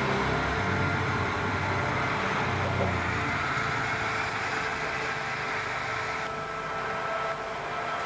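Armoured military vehicles' engines running, a steady engine noise heard through the playback of the reacted video.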